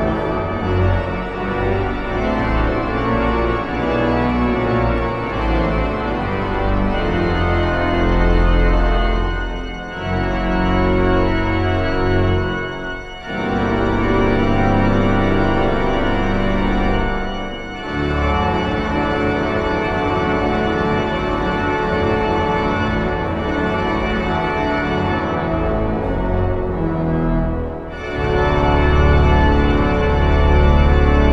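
The Wanamaker Organ, a huge pipe organ of over 28,000 pipes, played loud with full sustained chords over deep pedal bass. The sound breaks off briefly between phrases a few times.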